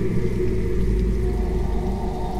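Low, steady rumbling drone of a TV drama's background score, with faint held tones above it.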